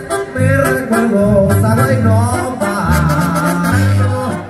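Mexican banda music playing: a loud melody line over sustained bass notes that change every half second or so.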